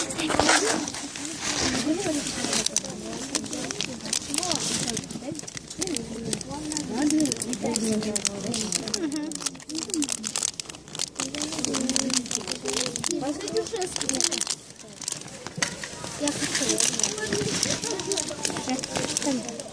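Indistinct voices of people talking, with crinkling and rustling of handling close to the microphone.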